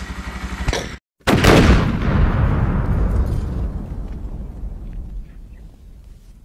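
A loud, deep boom sound effect hits about a second in, right after a sudden cut to silence, and dies away slowly over about four seconds. Before the cut, a motorcycle engine idles briefly.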